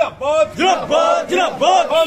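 A group of men chanting political slogans in unison, loud and rhythmic, such as 'Zindabad'.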